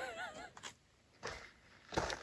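A woman's voice trailing off in a short wavering tone, followed by a quiet pause with only a couple of faint brief noises.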